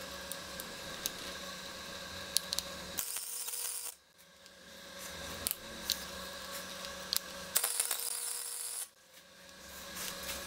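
Wire-feed (MIG) welder laying two short tack welds on a bare-steel pipe joint: each is a burst of arc crackle about a second long, the first about three seconds in and the second near the end. A steady hum runs underneath.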